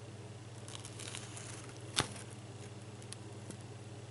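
Comic book paper crinkling faintly as the book is held, with a cluster of small crackles and then one sharp click about halfway through, over a steady low hum.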